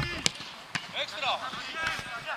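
A football kicked hard in a shot at goal: sharp knocks in the first second, followed by players shouting.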